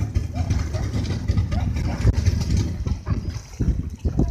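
Open-sea ambience from a small boat: a heavy, unsteady low rumble with faint, distant voices of swimmers.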